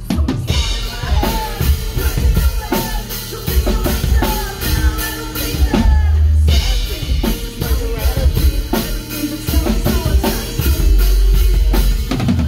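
Live post-hardcore band playing at full volume: a drum kit with fast, steady bass drum and snare hits under electric guitar and bass, with the singer's voice over it. Deep sustained bass notes swell about halfway through and again near the end.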